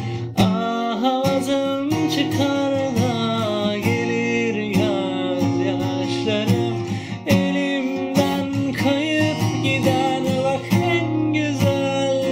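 Cutaway acoustic guitar strummed in a steady rhythm, with a man singing over it.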